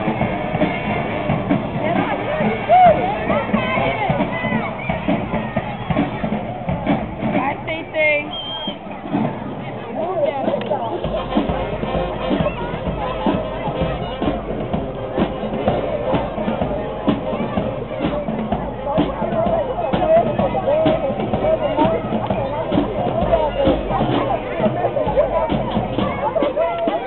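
A high school marching band playing, with drums in the mix, and several people talking over it in the stands.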